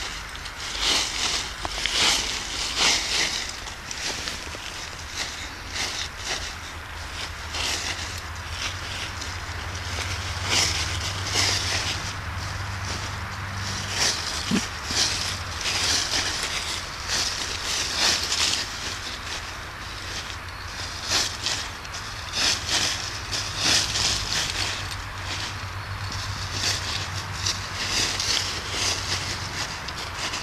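Dry fallen leaves rustling and crackling in quick irregular bursts as a beagle noses and shoves them about, covering something in the leaf litter.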